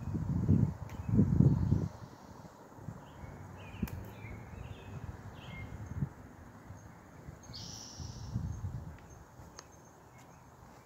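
Outdoor garden ambience with a few short, faint bird chirps. Low rumbling noise hits the microphone during the first two seconds and again near the end.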